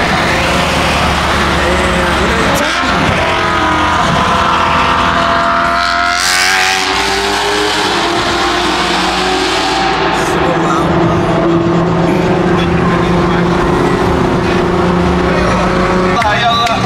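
Nissan GT-R's twin-turbo engine heard from inside the car while driving. It revs up with a rising pitch for a few seconds, there is a brief rush of noise about six seconds in, and then it runs at a steady pitch.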